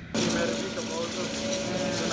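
Forage harvester and tractor running at a steady working pitch while the harvester chops maize and blows it into the trailer: a constant engine hum under a steady hiss.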